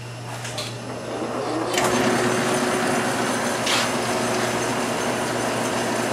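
Bourg AE22 automatic collator running, a steady mechanical whir with a faint hum that grows louder about two seconds in. There is a sharp click just before that and a brief swish near four seconds.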